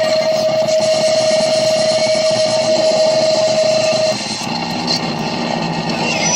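Improvised noise music from a chain of guitar effects pedals: a loud, dense wall of distorted noise with a single steady held tone in it. The tone cuts off about four seconds in, and the noise shifts lower as the pedal knob is turned.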